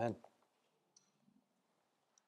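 A man's voice finishing the word "Amen", then near quiet with a faint click about a second in.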